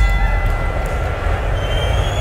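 Intro sound effect under a channel logo card: a sustained low rumble with steady high ringing tones over it.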